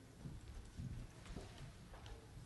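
Faint footsteps: low thuds about every half second as people walk across a stage.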